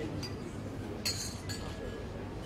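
Drinking glasses clinking together in a toast. There are several bright clinks that ring briefly, the loudest about a second in.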